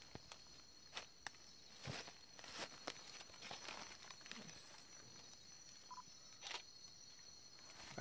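Night insects keep up a steady high-pitched trill, with a short, higher chirp repeating about once a second. Faint, scattered rustles and clicks of leaf litter sound underneath.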